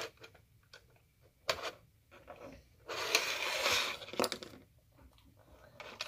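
Plastic Lego pieces and a doll handled on a tabletop: a few light clicks and taps, with about a second of rustling scrape about three seconds in.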